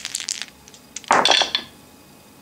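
Wooden dice clicking together in a shaken hand, then thrown into a felt-lined wooden dice tray, landing with a short clatter about a second in.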